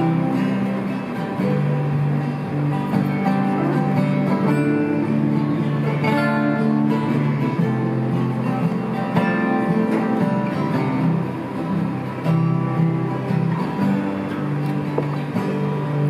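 Live folk band playing an instrumental passage: two acoustic guitars strumming with a mandolin, no vocals.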